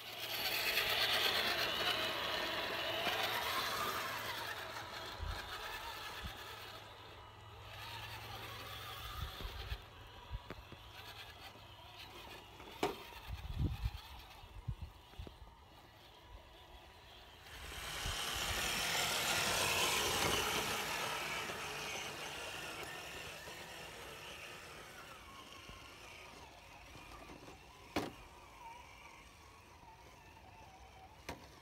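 Electric motors and geared drivetrains of radio-controlled scale rock crawlers whirring as they climb over rock. The whir swells near the start and again past the middle, with scattered knocks of tires and chassis against the rocks in between and near the end.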